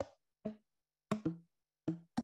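Cut tubes of bull kelp, tuned by cutting them at different lengths, struck with a stick: about five short pitched knocks at slightly different pitches, picking out a simple melody.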